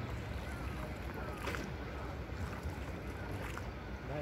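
Steady low rumble of a small wooden river boat under way on the water, with faint voices in the distance.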